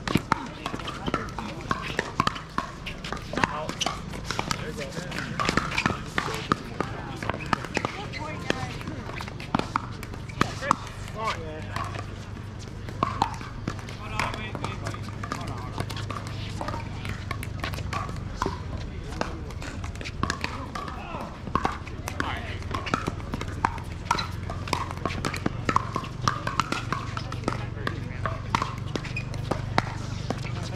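Indistinct chatter of players with frequent sharp pops of pickleball paddles striking balls on neighbouring courts, scattered irregularly throughout.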